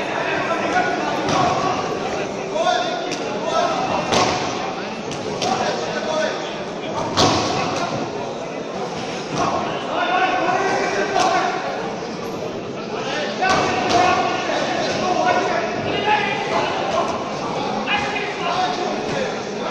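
Boxing gloves landing punches: several sharp thuds scattered through, echoing in a large hall, over indistinct voices calling out.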